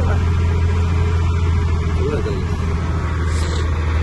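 Diesel engine of a heavy truck running steadily, a constant low hum heard from inside the cab.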